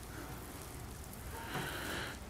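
Faint swish of a damp microfiber towel wiped over car paint, over a low steady room hum.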